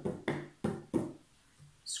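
A chopstick tapping the balloon skin stretched over a homemade tin drum: three even taps about a third of a second apart, each a short low knock with a brief ring, then a pause.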